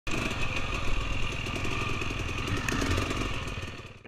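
Dirt bike engine running steadily, fading over the last half second and then cutting off.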